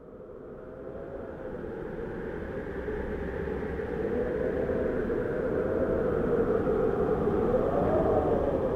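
A rumbling drone that fades in and swells steadily louder, with a wavering, slightly pitched hum at its centre.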